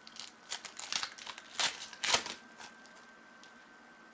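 A foil trading-card pack (2014 Panini Prizm World Cup) being torn open and crinkled by hand: a quick run of sharp crackles and rips, loudest around a second and a half to two seconds in.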